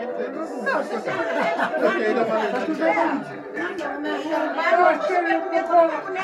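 Several people talking at once in overlapping conversation, with no pause.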